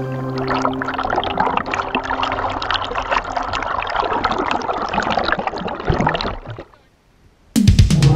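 Rushing, splashing creek water with a dense irregular crackle, heard up close with the microphone at or under the water. It follows the last held notes of a song fading in the first second and cuts off suddenly near the end. After a short silence a new song starts with heavy bass.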